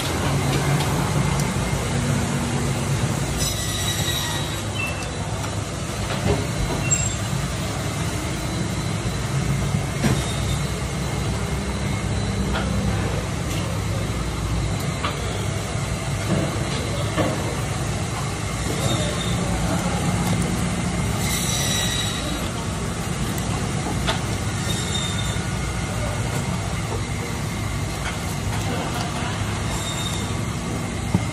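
Steady mechanical background hum, with brief high squeals about four seconds in and again past twenty seconds, and a few faint knocks.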